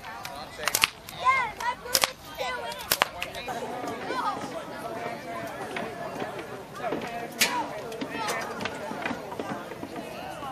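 BB guns fired at a youth shooting range: three sharp cracks about a second apart in the first three seconds, with children's voices around them. After that comes outdoor crowd chatter, with one more sharp crack about seven seconds in.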